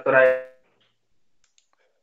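A person's voice: one short drawn-out syllable at the start that fades within about half a second. A few faint computer mouse clicks follow later.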